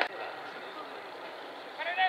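Steady ballpark background noise, with a sharp click at the very start and a voice beginning to call out near the end.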